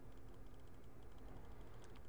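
Quiet room tone: a faint low hum with faint, rapid, evenly spaced ticking.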